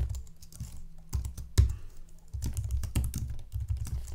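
Typing on a computer keyboard in short quick runs of keystrokes, with one sharper key strike about one and a half seconds in.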